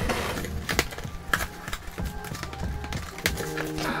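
Background music, with a few sharp cracks and scrapes from a blade slicing open a cardboard shipping box.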